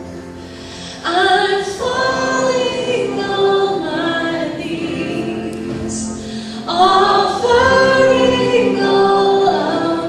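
A woman singing a worship song live over acoustic guitar. Her sung phrases come in strongly about a second in and again near seven seconds, with the guitar carrying on underneath.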